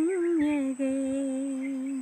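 A woman's unaccompanied solo voice singing a slow, wordless phrase of a Christian devotional song. A short wavering line breaks off briefly, then she holds one long, steady note.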